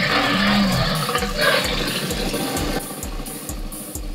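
A dinosaur roar sound effect from the Rex800 robot's speaker, lasting about three seconds and fading near the end, over music with a steady drum beat.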